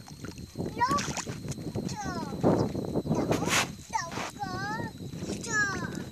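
Wet mud splashing and sloshing as a child moves sticks and body through a flooded paddy, with a child's voice giving several short calls that swoop up and down in pitch.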